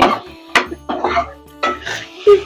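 A steel spatula scraping and stirring potatoes in masala against the side of a metal kadhai, in a few short strokes over background music.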